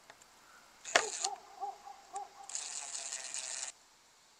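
Brushless cordless impact driver driving a screw into wood. The motor whines in a few short trigger pulses starting about a second in, then a harsher rattle of the impact action sets in for about a second as the screw seats, and it stops.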